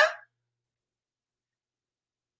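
Dead silence, with no room tone, after a woman's greeting trails off in the first moment.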